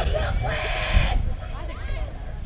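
A person's loud, drawn-out shout lasting about a second, over a low rumble of wind on the microphone.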